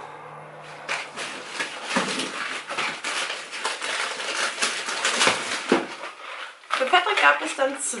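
A shopping bag rustling and crinkling as groceries are rummaged out of it: several seconds of irregular scraping and rustling.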